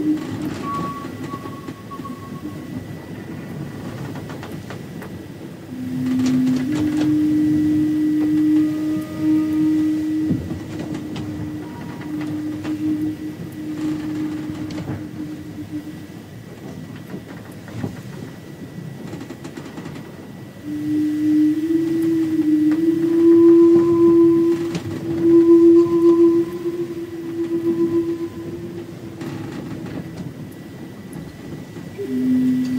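A low-pitched wooden flute, a Zen flute played in a Native American style, plays long held notes in slow phrases. The phrases come about a second in, from about six to sixteen seconds, and again from about twenty-one seconds, each stepping up in pitch. A steady low rumbling noise runs underneath.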